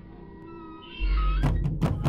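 Experimental soundtrack music: faint held tones and a short pitched cry, then a deep bass enters about a second in and a quick, uneven run of sharp knocks starts about halfway.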